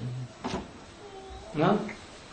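A pause in a man's talk: a brief low hum at the start, a single click about half a second in, and a short spoken syllable near the end.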